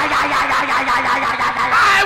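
Church congregation shouting "Fire!" in loud prayer, one man's voice holding a long, drawn-out cry over the noise of the crowd until near the end.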